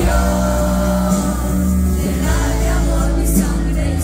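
Loud live band music from a concert PA: held brass notes and singing voices over a steady bass line.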